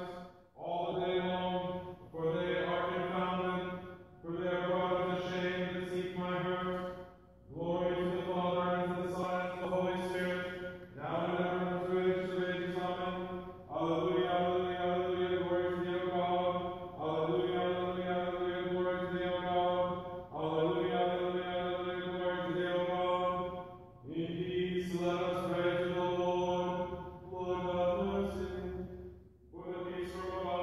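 Orthodox liturgical chant: a sung voice holding phrases of a few seconds each on a mostly level pitch, with short breaks for breath between them.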